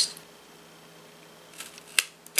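Crop-A-Dile eyelet and hole punch squeezed on a paper bookmark: a faint click, then a sharp metallic snap near the end as the punch goes through.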